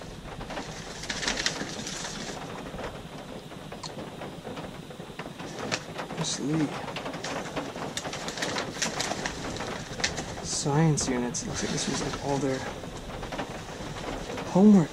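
Old papers and letters rustling and crackling as a hand leafs through a cardboard box of them. A few short, low, rising-and-falling calls sound now and then, the clearest about eleven seconds in.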